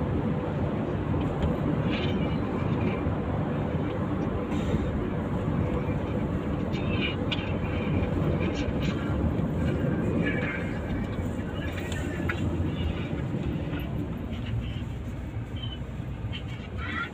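Steady road and engine rumble heard inside the cabin of a moving Suzuki car.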